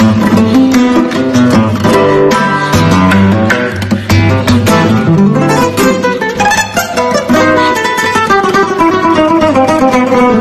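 Solo nylon-string classical guitar playing a flamenco-style arrangement: a plucked melody over bass notes, broken up by quick strummed chords.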